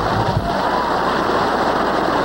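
Audience applauding, with the orchestra's last low notes dying away in the first half second.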